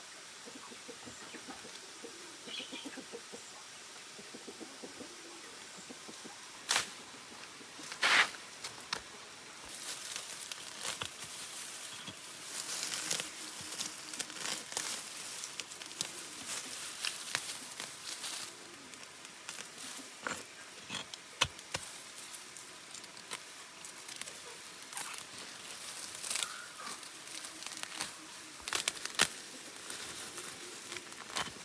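Grass and weeds pulled up by gloved hands from between paving stones: rustling and tearing of stems and roots, with a couple of sharp snaps and then steady tearing and rustling from about ten seconds in.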